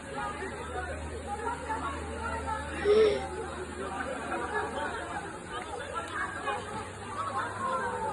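Several people talking over one another, with no single clear speaker, and one voice rising louder about three seconds in.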